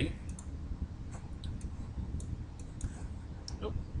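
Scattered light clicks of a computer mouse button, about a dozen at irregular intervals, over a low steady background hum.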